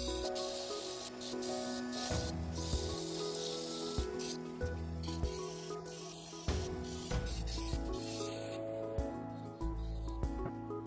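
Sandpaper rubbing on a small wooden top spinning on a lathe, a hissing sanding sound that is strongest in the first half, under background music.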